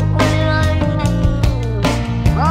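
Rock band music: electric guitars, bass and drums playing, with a sliding note that falls in pitch over the second half.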